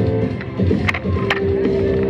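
Electric violin playing over a backing track with a steady beat, holding one long note in the second half, with a couple of sharp percussive clicks.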